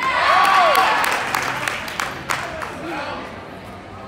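A few onlookers clapping and cheering, with one rising-and-falling shout near the start. The clapping is loudest in the first second and dies away over the next two.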